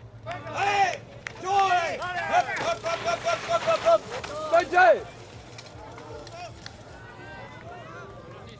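A spectator yelling encouragement at riders as they pass, in loud high-pitched shouts, with a quick run of about half a dozen repeated calls in the middle before one last shout; the yelling stops about five seconds in.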